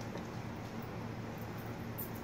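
Full-size refrigerator compressor running with a steady low hum.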